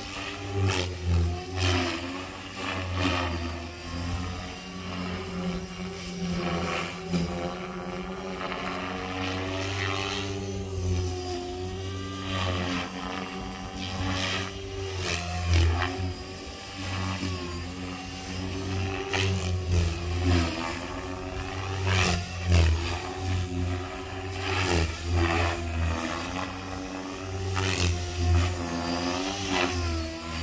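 Blade Fusion 550 electric RC helicopter in flight: motor and main-rotor whine rising and falling in pitch as the throttle and blade pitch change, with sudden loud swishes every few seconds.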